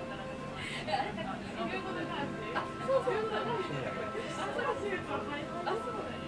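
Coffee-shop ambience: several people's indistinct conversation over quiet background music.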